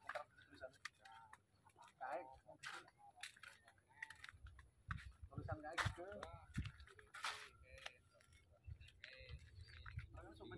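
Faint, intermittent talking with a few sharp clicks scattered through it, and a low rumble around the middle.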